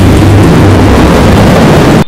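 Loud television channel logo sound effect: a steady rushing noise over a low hum, cutting off suddenly at the end.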